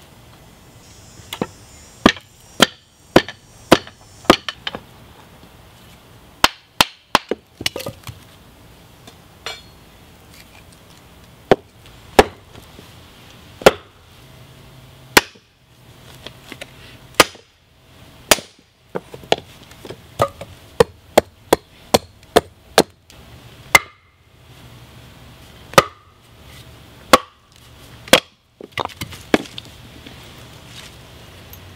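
An axe driven into a wooden handle block by blows on its poll from a wooden baton and a hammer, splitting the wood down. The sharp strikes come in irregular bursts, sometimes several in quick succession.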